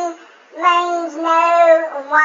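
Speech only: a high-pitched voice speaking in drawn-out, sing-song syllables.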